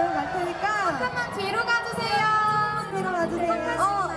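Speech: voices talking, with crowd chatter behind them.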